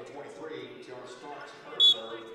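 One short, shrill blast of a referee's whistle near the end, over a murmur of voices in the gym.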